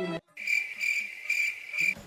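Cricket chirping: a steady high trill that swells and fades about twice a second. It starts suddenly after a brief silence.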